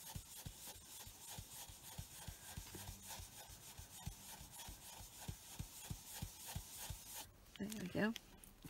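Foam blending brush rubbed in repeated circular strokes over card stock, inking around a paper mask: a soft, steady scratchy rubbing that stops about seven seconds in.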